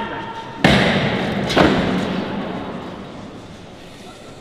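Two loud heavy thuds about a second apart, echoing and dying away slowly in a large church, with the ringing tail of a metallic strike fading at the start.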